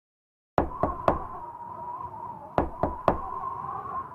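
Knocking at the start of a song: three quick knocks, a pause of about a second and a half, then three more, over a faint steady tone.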